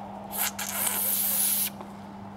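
Pressurised spray hissing on a carburettor part, a short burst and then a longer one of about a second that stops sharply, with a faint steady hum underneath.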